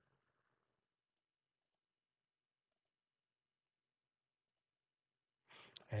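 Near silence with four faint computer mouse clicks, spread at irregular intervals, as curves are selected in CAD software.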